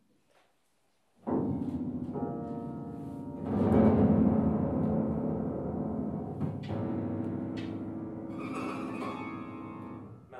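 Grand piano sounded from inside, on its strings: a sudden loud, low, ringing mass of tones starts about a second in. It swells louder again a couple of seconds later and keeps ringing.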